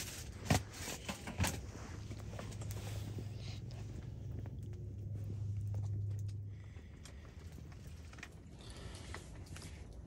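Small fire of scrap lumber blocks burning, with scattered pops and crackles, the two sharpest about half a second and a second and a half in. A low steady hum runs underneath from about two to six and a half seconds in.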